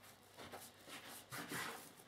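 Faint, soft scrapes and taps of a plastic dough scraper cutting down through a log of dough onto a countertop, a few short strokes about half a second apart.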